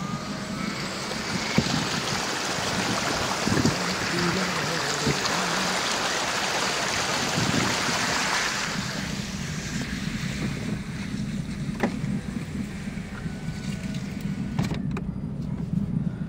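Car tyres ploughing through shallow floodwater, a rushing splash of spray heard through the lowered side window over the low hum of the engine. The splashing is loudest about eight seconds in, then fades away about a second later as the car leaves the water.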